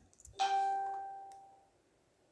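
A single bell-like chime about half a second in, one steady pitch that fades away over about a second.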